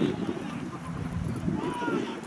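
Indistinct shouting of players and sideline voices on a rugby league field during open play, with a short raised call near the end.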